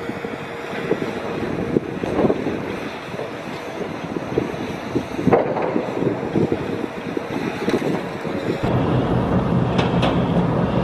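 Wind buffeting the microphone: a steady rushing noise broken by irregular gusty thumps. A deeper, louder rumble comes in near the end.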